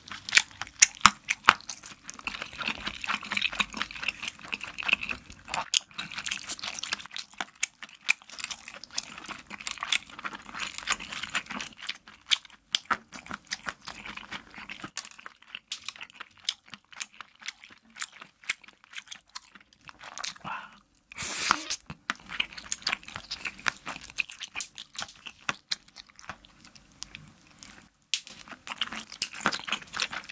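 Close-miked chewing of stretchy melted rainbow cheese topped with crunchy candy sprinkles: sticky, wet mouth sounds full of small, irregular crunches. One louder, longer burst comes about two-thirds of the way through.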